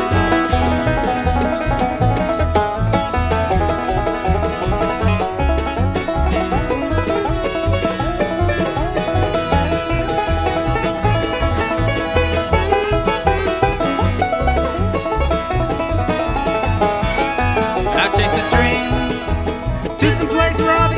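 Acoustic bluegrass band playing a song live, the banjo picking prominently over acoustic guitar and upright bass keeping a steady beat.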